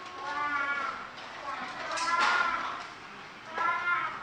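Young children's voices reading aloud, many at once, high-pitched and sing-song, rising and falling in three swells.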